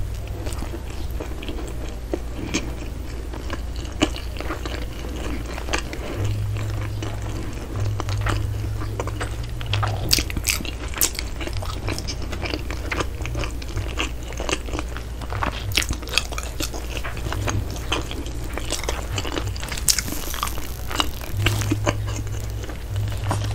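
A person chewing soft bread close to a microphone, with wet mouth clicks and small crackles of crust throughout, over a steady low hum.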